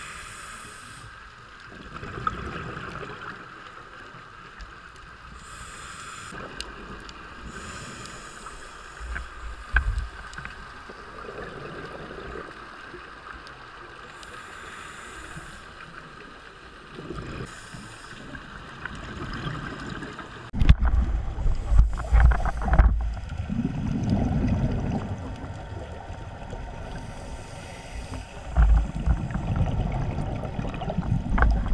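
Underwater sound of a scuba diver breathing through a regulator: short hissing inhalations, then low rumbling bursts of exhaled bubbles, the loudest about two-thirds of the way through and again near the end, over a faint steady whine.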